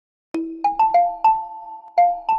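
A short logo jingle: about five bright, chiming notes struck in quick succession, each ringing on. It starts about a third of a second in, after silence.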